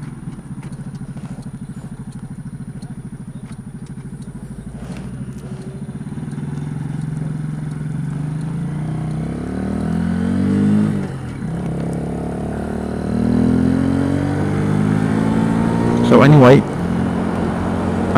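Kymco K-Pipe 125's single-cylinder four-stroke engine while riding, heard from inside the rider's helmet. It runs steadily at first, then pulls up in pitch. About eleven seconds in the pitch drops briefly at a gear change, and then it rises again.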